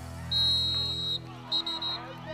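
Referee's whistle blown to stop the play after a tackle: one sharp, steady blast of about a second, then a shorter, broken blast near the end.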